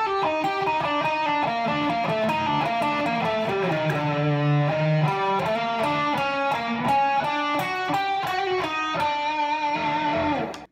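Electric guitar playing a lead lick slowly, one note at a time, in a G Hirajoshi and G Hungarian minor mix, ending on a held note with vibrato.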